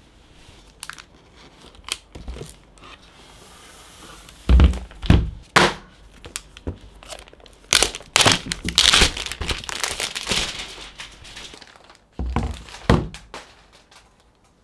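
Clear plastic protective sleeve crinkling as a laptop is handled and slid out of it on a table, with several knocks and thuds. The first thuds come about four to five seconds in, the crinkling is densest past the middle, and a few more knocks come near the end.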